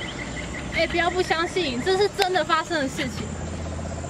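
A high-pitched voice speaking indistinctly from about a second in, over a steady background of crickets.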